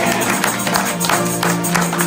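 Live acoustic country band playing: strummed acoustic guitars and banjo with a steady tambourine beat.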